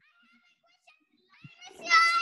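Near silence, then a voice starts speaking near the end, saying "you, I".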